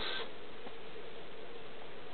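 Steady outdoor background noise with a faint, even hum and no distinct event.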